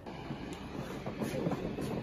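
Small caster wheels of a glass-sided wheeled cart rolling over a concrete floor: a continuous rough rumble with scattered small clicks and rattles.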